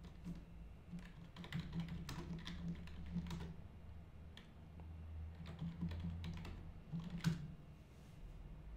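Typing on a computer keyboard: irregular runs of keystrokes, with one sharper key strike about seven seconds in.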